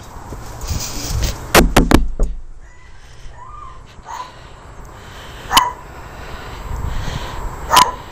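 Three quick knocks on a door, then a dog whining briefly and barking twice.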